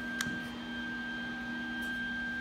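Steady electrical hum of a welding machine standing by, a low tone with a thin higher whine over it, with one light click about a quarter second in.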